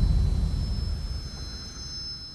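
Deep rumbling boom of a television title-sequence sting, fading away steadily, with faint high ringing tones held above it.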